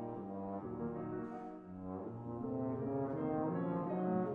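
Bass trombone playing a phrase of held low notes that move stepwise, with piano accompaniment.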